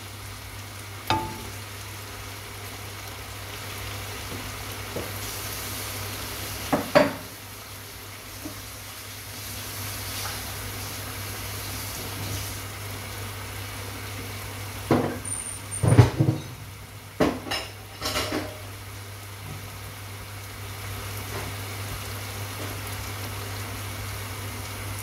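Chicken sizzling as it fries in a pan, over a steady low hum, with a few knocks and a cluster of dish clatters around fifteen to eighteen seconds in.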